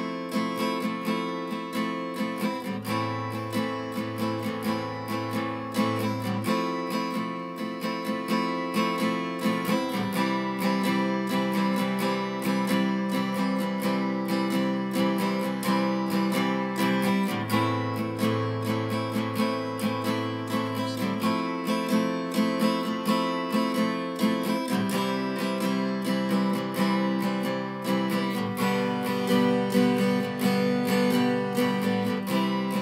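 Acoustic guitar strummed in a steady rhythm of quick strokes, changing chords every few seconds.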